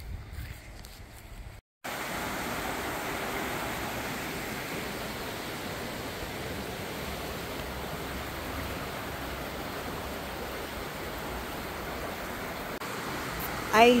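Shallow river running over rocks: a steady rush of water that begins suddenly about two seconds in and holds an even level.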